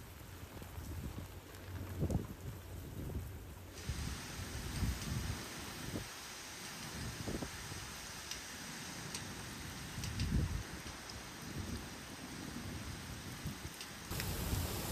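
Hurricane rain pouring down in a steady hiss, with wind gusts buffeting the microphone in short low rumbles every few seconds. The rain's hiss turns sharper about four seconds in.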